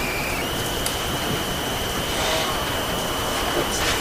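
Steady hiss of a courtroom's audio feed with a thin, high electrical whine that steps up slightly in pitch about half a second in, and a few faint clicks.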